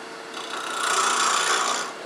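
Turning tool cutting a small off-axis-mounted wooden piece spinning on a lathe: a steady shaving hiss that starts about a third of a second in and stops just before the end, over the lathe's faint steady hum.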